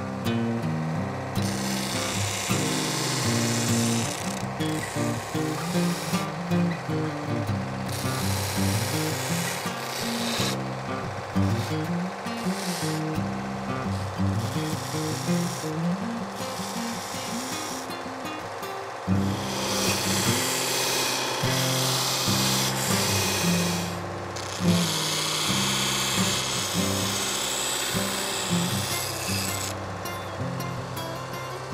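Small belt grinder with a Scotch-Brite belt, a hardened file-steel knife pressed to the belt in several passes of a few seconds each with short breaks, smoothing over the edges so they are not sharp in the hand. Background music plays throughout.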